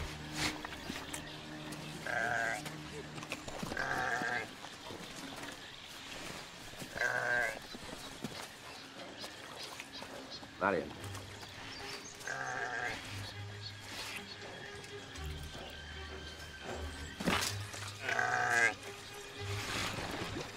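A ram stuck in bog mud bleating about five times, a few seconds apart, over sustained film-score music. There are two short sharp sounds, one about midway and one near the end.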